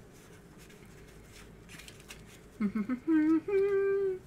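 A person humming a short tune: a few quick notes, then two held notes, the second higher.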